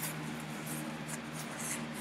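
A brown paper mailer rubbed and shifted in the hands: a soft rustling with a couple of brief scuffs, over a faint steady hum.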